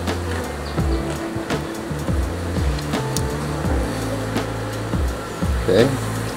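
Background music with a steady beat and sustained low chords.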